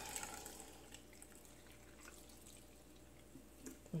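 Salt brine poured from a plastic jug into a glass jar of cucumbers: a faint, steady trickle of liquid, a little louder in the first second.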